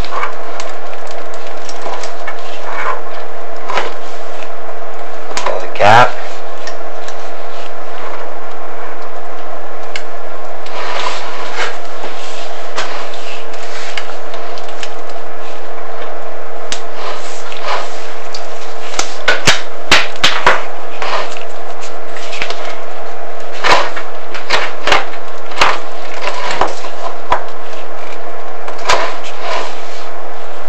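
Chimney inspection camera knocking and scraping against the inside of the flue as it is worked down, with irregular sharp knocks over a loud steady hum, the knocks coming thickest about two-thirds of the way through.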